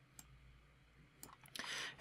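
Faint computer mouse clicks, a few scattered through near-silent room tone, then a short intake of breath near the end.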